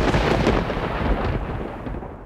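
A dramatic thunder-like sound effect: a loud rumbling crash of noise that fades away steadily toward the end.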